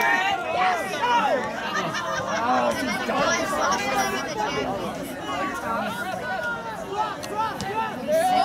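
Several voices talking and calling out at once, overlapping in a steady chatter of spectators and players.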